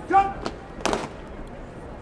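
A parade-ground word of command, shouted and drawn out on one pitch. About a second in comes a short, sharp noise.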